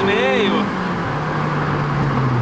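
Honda Civic Si engine under hard acceleration, heard from inside the cabin. Its drone drops in pitch about a third of the way in, then sinks slowly.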